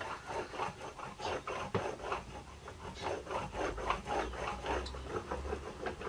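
A metal fibreglass laminating roller rolling back and forth over resin-wetted fibreglass cloth, a quick, uneven run of short rubbing strokes. The rolling presses the resin through the cloth and works out air bubbles.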